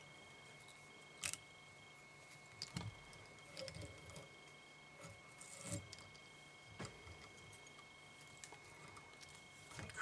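Faint, scattered small clicks and taps of fingers handling fly-tying thread and a bobbin holder at a vise, as new thread is started on the hook shank, over quiet room tone with a faint steady high tone.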